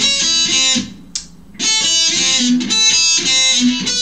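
Electric guitar (a Jackson) playing a lead phrase of quick notes twice, with a short break about a second in.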